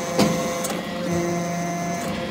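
Hydraulic scrap-metal briquetting press running with a steady hum and a high whine. There is a single knock shortly after the start as a briquette of pressed metal chips is pushed off the discharge chute.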